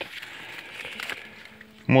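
Quiet rustling of maize leaves brushing past as someone moves between the rows, with a couple of faint clicks about halfway through.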